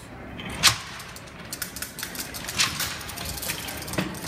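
Babbage Difference Engine replica being run, its brass gear columns and carry levers clicking and clacking irregularly, with a sharp clack about two-thirds of a second in. The sound is a phone recording played back over the hall's speakers.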